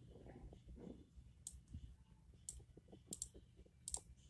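Computer mouse clicking a few times, single clicks and quick double clicks about a second apart, over faint room tone.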